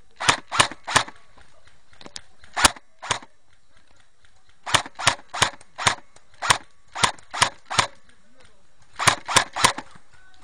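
Airsoft guns firing single shots in quick runs: about sixteen sharp cracks in clusters roughly a third of a second apart, with short pauses between clusters.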